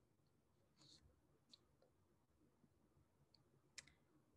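Near silence with a few faint clicks, the sharpest one near the end: a computer click advancing the presentation slide.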